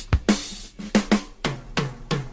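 Rock drum kit on a 1970s hard-rock recording playing a break on its own: kick, snare and toms struck in a quick, uneven pattern, the toms ringing briefly after each hit, with the rest of the band dropped out.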